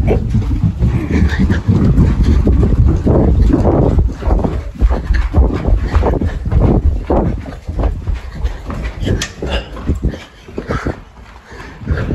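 Running footsteps with heavy panting and rumbling handling noise on a hand-held phone's microphone. The running eases off and the sound drops about two seconds before the end.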